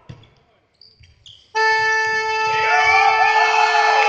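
A sports-hall scoreboard horn comes on suddenly about a second and a half in and holds one loud, steady tone: the final buzzer ending the futsal match at 3–2. Voices shout over it.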